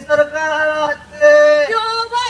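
A voice singing long held notes of about half a second each, with short breaks between them; the pitch steps down a little near the end.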